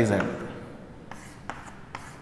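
Chalk writing on a chalkboard: a few short, sharp chalk strokes and taps in the second half as arrows are drawn between the sets.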